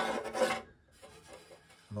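A short scraping rub in the first half-second, like a hand brushing against hoses or the handheld camera.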